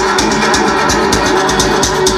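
Loud dance music from a DJ set, mixed live on a DJ mixer, with a steady drum beat.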